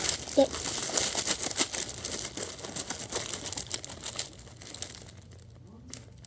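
Plastic candy bag crinkling as a hand rummages inside it, a dense run of crackles that dies away near the end.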